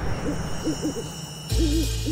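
An owl hooting in a run of short hoots, a night-time sound effect. About one and a half seconds in, soft background music with a low bass note comes in under it.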